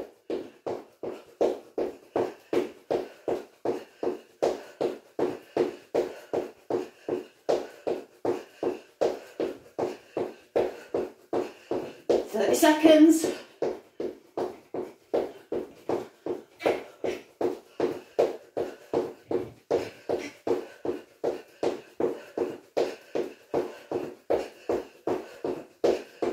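Steady rhythmic thuds of trainers landing on a wooden floor, roughly three a second, from someone hopping twice on each foot. A short burst of voice comes about halfway through.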